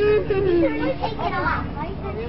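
Children's voices chattering and calling, unintelligible, with one longer drawn-out falling voice in the first second.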